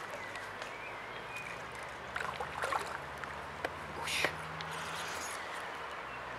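Quiet outdoor ambience by the water: a faint steady low hum with scattered soft clicks and a short rushing noise about four seconds in.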